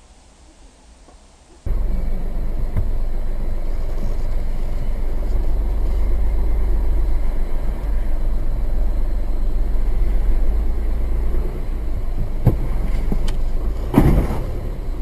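Steady low rumble of a stationary car picked up by its dashcam microphone, starting abruptly about two seconds in. There are a couple of faint clicks near the end.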